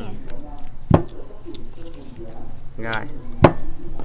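Two sharp knocks, one about a second in and a louder one near the end, amid quiet talk.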